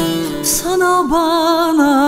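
Turkish folk music (türkü): a plucked string accompaniment under a held, wavering melody line with vibrato, which breaks briefly about half a second in and then resumes.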